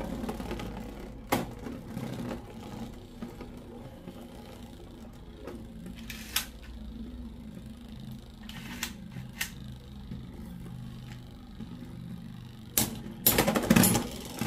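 Two Beyblade X spinning tops whirring steadily on the plastic stadium floor, with sharp clacks as they collide now and then and a rapid cluster of hits near the end.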